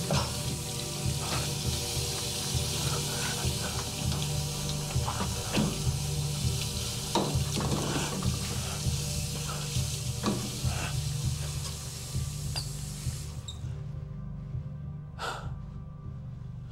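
Faucet running into a stainless steel sink while a small bottle or tube is rinsed and handled, with scattered light clinks; near the end the water cuts off. A low steady music drone plays underneath.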